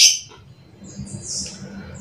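Two short high-pitched bird chirps from a small songbird: a loud one right at the start and a softer one about a second and a half in.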